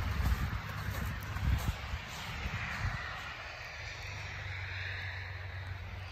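Heavy rain falling, a steady hiss, with irregular low thumps on the microphone in the first two seconds and a low steady hum after.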